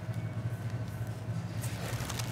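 A steady low hum with faint background hiss: room tone.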